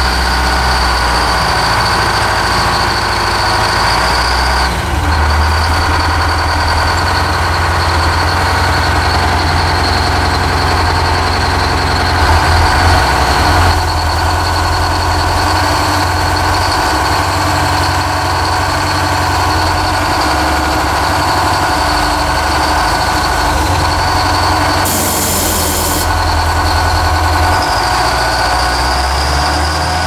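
Terex wheel loader's diesel engine running steadily, heard from inside the cab, with a constant high-pitched squeal over it. A short hiss comes about 25 seconds in.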